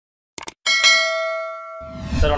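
Subscribe-animation sound effects: a quick double mouse click, then a bright bell chime that rings out and fades over about a second.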